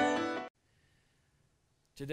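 The end of an intro song, sustained keyboard notes fading out and stopping about half a second in, followed by near silence.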